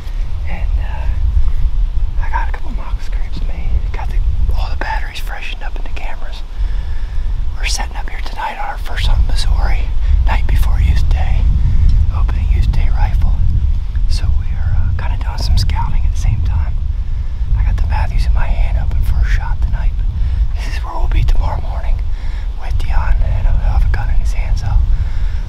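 A man whispering, with a heavy low rumble on the microphone underneath that grows stronger about nine seconds in.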